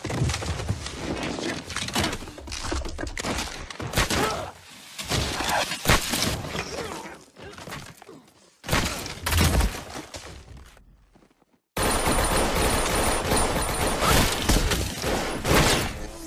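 Film gunfight sound effects: repeated gunshots and impacts, with bursts of rapid fire. The sound cuts to silence for about a second about three-quarters of the way through, then returns as a dense, continuous stretch of loud noise.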